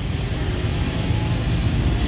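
A steady low rumble of motor vehicle noise, like traffic going by.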